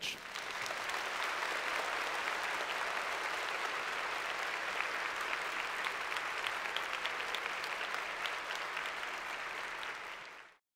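Audience applauding steadily, a dense patter of many hands clapping that eases off slightly near the end.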